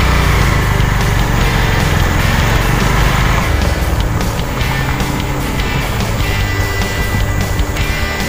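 Background music over the low rumble of a vehicle driving on a dirt road, the rumble easing a little after the first few seconds.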